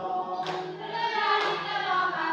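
A mixed group of voices singing together, with hand claps keeping time about once a second.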